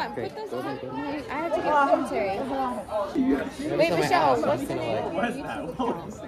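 Several people chattering and talking over one another, no single voice standing out.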